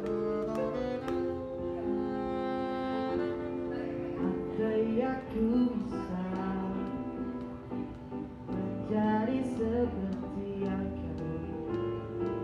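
Alto saxophone playing long held melody notes over electric keyboard; about four seconds in, the sax drops out and a male voice begins singing over the keyboard accompaniment.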